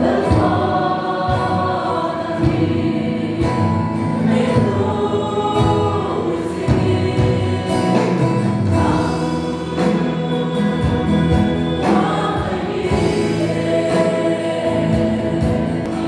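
A congregation of young men and women singing a hymn together as a choir.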